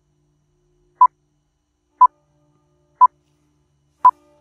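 Countdown timer beeping once a second: three short, identical beeps at a steady mid pitch, evenly spaced, ticking off the seconds.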